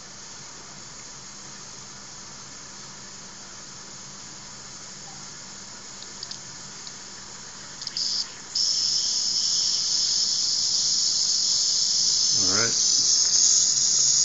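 Wilesco D10 toy steam engine's boiler venting steam through its open valve: a steady high hiss that jumps louder about eight seconds in and keeps building as the water starts to boil.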